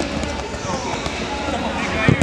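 Football players shouting and calling to each other during play, with dull thuds of the ball being kicked on artificial turf.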